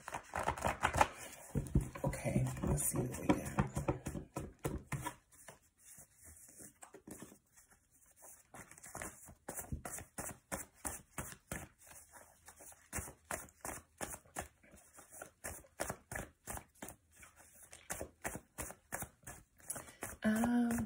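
A deck of oracle cards shuffled by hand: quick light flicks and clicks of card edges, about four or five a second, busier and louder in the first few seconds.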